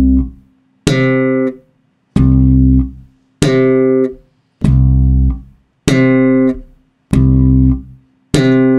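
Electric bass guitar played slap style, slowly: a thumb-slapped low note alternates with a popped higher note. A new note comes about every 1.25 s, each with a sharp snap and then ringing away.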